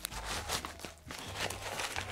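Crinkling and rustling of a padded, bubble-lined paper mailer being pulled open by hand, a series of irregular crackles as the wrapped package inside is drawn out.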